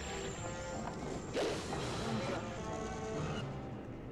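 Horror film soundtrack: tense score music with a sudden noisy hit about a second and a half in, and a woman screaming.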